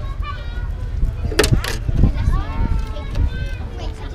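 Voices of onlookers talking, unclear and not close, over a steady low rumble, with two sharp knocks about a second and a half in.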